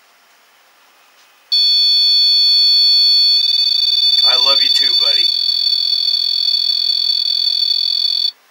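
M-Pod EMF detector going off: it sounds a steady electronic alarm tone that starts suddenly about one and a half seconds in, a sign that it has picked up an electromagnetic field. The tone shifts slightly in pitch a little before halfway, and a short voice cuts across it.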